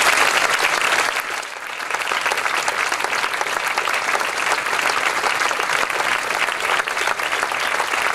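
Audience applauding, a dense patter of many hands clapping. It is loudest in the first second and then carries on steadily.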